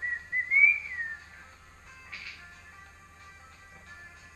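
A person whistling a short wavering phrase that rises and falls for about the first second, then stops. A brief breathy sound comes about two seconds in.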